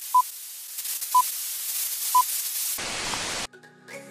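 Film-leader countdown sound effect: three short high beeps, one each second, over a steady film-projector hiss. The hiss drops and cuts off near the end.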